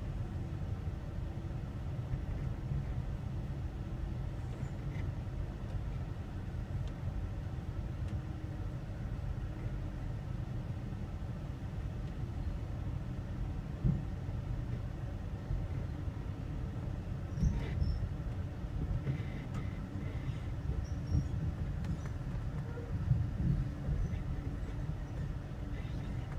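Amtrak California Zephyr passenger car running along the rails, heard from inside the car: a steady low rumble with a few brief knocks scattered through it.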